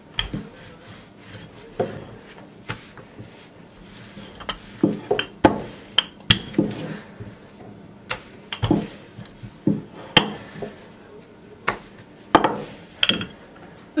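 Wooden rolling pin rolling out a soft yeast dough ball on a silicone baking mat: irregular sharp knocks as the pin is rolled back and forth and set down, with soft rubbing of the pin and hands on the dough in between.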